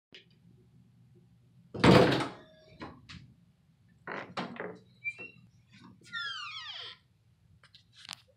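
Interior door opened, with a loud thunk about two seconds in and a few lighter knocks after it. Later comes a falling squeak.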